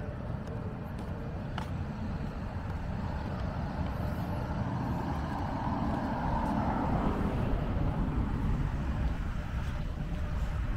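A car drives past, its tyre and engine noise swelling about halfway through and fading again, over a steady low rumble.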